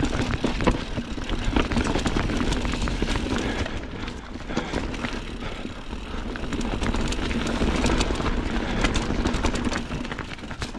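Mountain bike ridden down rocky singletrack: a steady low rumble from the tyres rolling over dirt and rock, with frequent sharp knocks and rattles as the bike bounces over the rocks.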